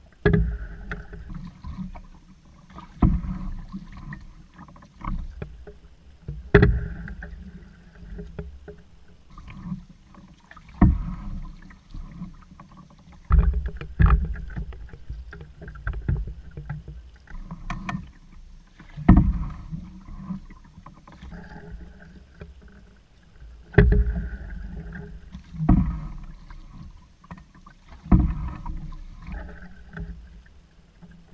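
Paddle strokes from an open canoe: every few seconds a paddle catches the water with a sharp splash, followed by water gurgling and rushing along the hull. A steady low rumble of water and hull runs underneath.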